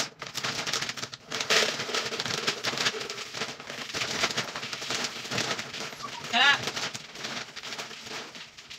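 Dry dog kibble rattling and pouring as it is scooped from a large bag into a hard plastic container, a dense crackling clatter of many small pellets. A brief wavering high-pitched squeal cuts in about six and a half seconds in.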